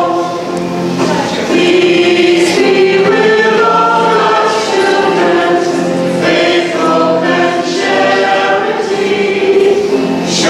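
A choir of several voices singing a liturgical hymn together in long held notes.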